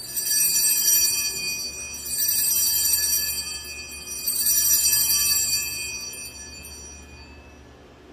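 Altar bells rung in three shakes at the elevation of the host during the consecration, each a bright, high jangle that rings on and fades, dying away near the end.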